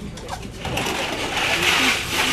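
Folding tables being handled and moved, a noisy scraping rattle that starts about half a second in and grows louder.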